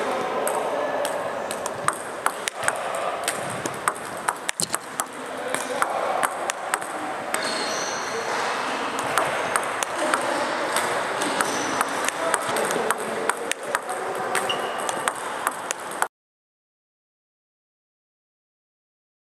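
Table tennis balls clicking off the table and off rubber bats in quick, irregular succession during backhand flick play in a large hall. The sound cuts off suddenly near the end.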